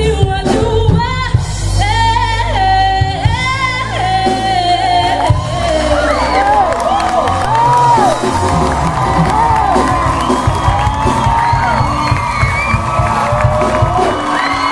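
Live band of acoustic guitar, drums and keyboard playing behind a female lead singer. From about five seconds in, the audience whoops and cheers over the music.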